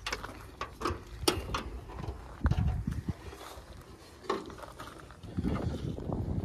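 Scattered clicks and knocks of a car bonnet being unlatched, lifted and propped open, with a few low thuds from handling the bonnet.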